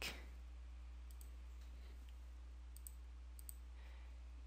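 A few faint computer mouse clicks over a steady low electrical hum, as Excel's Goal Seek dialog is opened.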